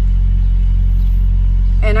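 Steady low rumble of a semi-truck's diesel engine running, heard from inside the cab.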